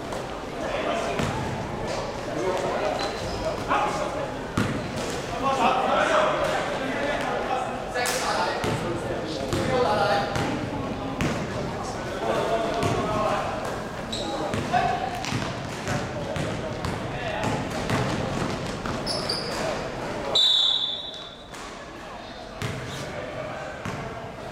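Basketball game in a large hall: the ball bouncing on the court, with players' voices calling out. A short, loud, shrill referee's whistle blast comes near the end.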